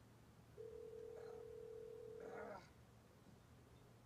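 A man's strained, high-pitched hum through closed lips, held steady for about two seconds and ending in a short breathy gasp, as he reacts to a swallow from a bottle of liquor.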